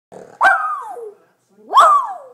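Miniature schnauzer giving two drawn-out barks about a second apart, each falling in pitch at the end: demand barking for a toy she wants.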